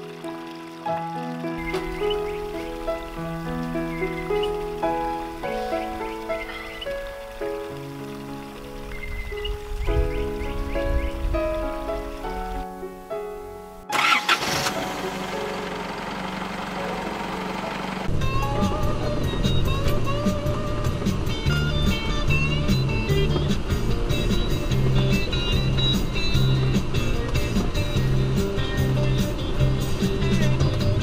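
Background music: a gentle melodic passage of stepping notes, a sudden loud rise a little before halfway, then a louder, fuller section with a steady beat.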